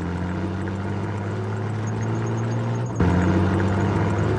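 A motor vehicle's engine running steadily, a low drone of pitch that holds even, breaking off about three seconds in and coming back a little louder.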